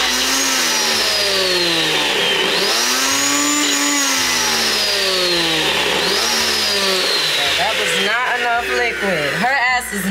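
Single-serve personal blender running on a load of frozen fruit. The motor's pitch jumps up and then slowly sinks, three times over. It stops near the end.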